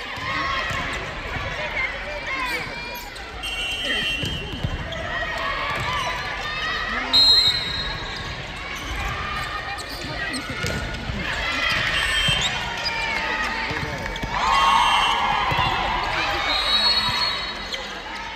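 Indoor volleyball match sounds in a large gym: players' calls and shouts, shoe squeaks on the wooden court and the thud of the ball. A short shrill referee's whistle sounds about seven seconds in, the loudest sound, signalling the serve.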